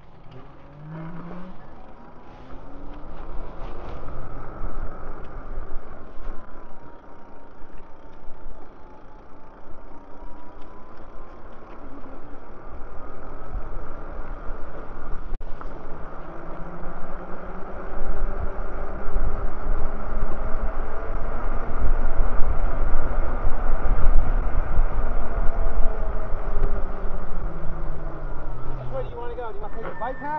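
Electric bike riding along a paved path, its motor whine rising in pitch as it pulls away and falling again near the end as it slows, under heavy wind rumble on the microphone.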